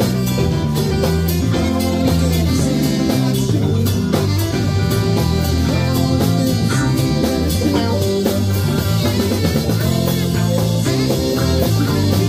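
A live rock band playing: electric guitars over a drum kit and keyboard, in a steady groove.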